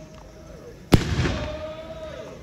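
A single loud bang about a second in, followed by a rolling echo that fades over the next second.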